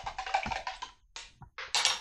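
A plastic drink cup and its lid being handled, with short clattering, rasping noises in three bursts.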